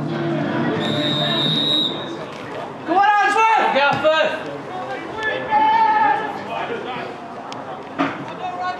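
Referee's whistle blown once, a steady high note lasting about a second, then players shouting to each other on the pitch.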